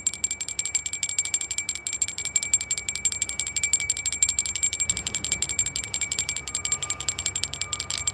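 Continuous rapid metallic jingling, about ten strikes a second, over a steady high bell-like ring.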